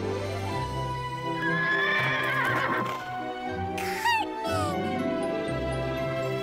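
A horse whinnies over soft background music: a wavering call about two seconds in, then a shorter call that falls in pitch about four seconds in.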